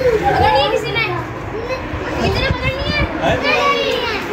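Children's high-pitched voices, talking and calling out over one another while they play.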